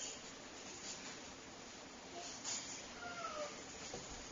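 Neapolitan Mastiff puppy giving a faint, short whimper that falls in pitch about three seconds in, after a brief squeak a little earlier.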